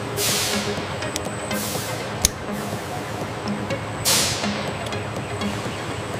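Background music with a steady low pulse, overlaid with three hissing whooshes that fall in pitch and a single sharp click a little after two seconds in.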